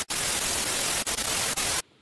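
Television static sound effect: a steady rush of white-noise hiss with a brief dropout just after it starts and a flicker about a second in, cutting off suddenly near the end.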